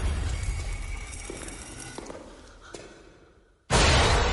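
Film-trailer sound design: a low rumble with faint high tones fading away over about three and a half seconds to near silence, then a sudden loud impact hit near the end.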